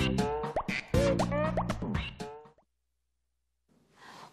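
Bouncy children's music jingle with quick rising pitch sweeps like cartoon sound effects. It cuts off abruptly a little over two seconds in.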